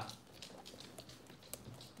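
Faint clicks of a beagle puppy's paws and claws on a hard floor as she scampers about.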